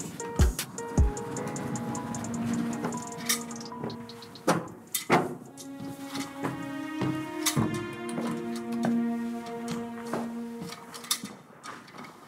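Background film score music: held tones with sharp percussive hits scattered through it.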